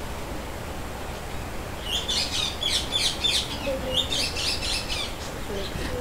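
A bird chirping in the background: quick runs of short, high chirps from about two seconds in until near the end.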